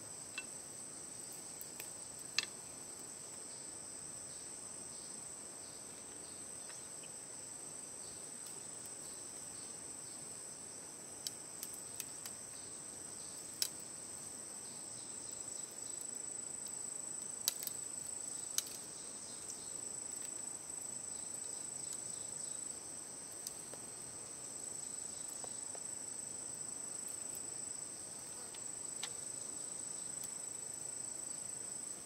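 Steady high-pitched chorus of insects in the forest, with a few isolated sharp clicks and snaps from bamboo strips being handled and split.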